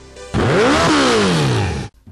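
Motorcycle engine sweeping past at speed: its pitch rises and then falls over a loud rushing noise, and it cuts off suddenly near the end.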